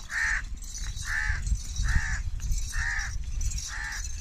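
An animal call repeated in a steady series, about one call a second, five times, over the low rumble of a goat herd walking on a dirt track and a steady high hiss.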